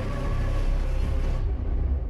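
Deep, steady rumble with a hiss over it from a TV show's soundtrack; the hiss cuts off about one and a half seconds in and the rumble fades near the end.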